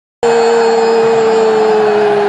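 A large stadium crowd holding one long unison "oh", its pitch sinking slightly, over the steady noise of the stands. It starts suddenly just after the opening.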